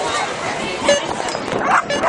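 Flyball dogs barking in a quick run of short yips, about three a second, starting about one and a half seconds in, over a crowd's chatter.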